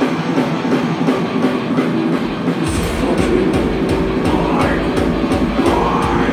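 A heavy metal band playing live, with guitars and drums at full volume. About two and a half seconds in, heavy bass and kick drums come in under the guitars.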